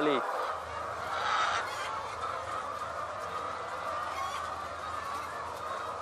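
A large flock of laying hens clucking and calling together in a dense, steady chorus of overlapping calls, over a low steady hum.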